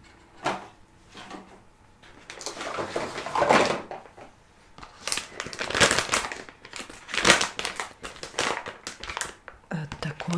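Plastic bag and product packaging crinkling and rustling in irregular spells as used-up items are rummaged through and pulled out, with a faint rustle about half a second in and louder spells through the second half.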